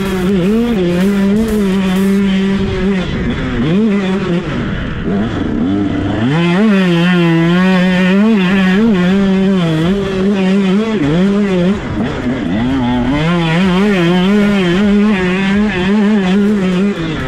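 KTM SX 125 two-stroke motocross engine running at high revs under throttle. The revs drop away and climb back several times, most deeply about four to six seconds in and again about twelve seconds in, and are held high in between.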